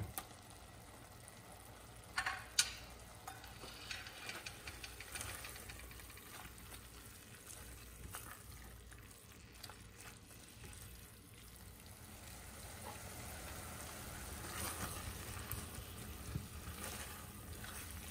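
Tuna and onion-tomato masala sizzling faintly in an enamelled cast-iron pot while a silicone spatula stirs and scrapes through it, the stirring growing louder toward the end. Two sharp knocks come about two seconds in.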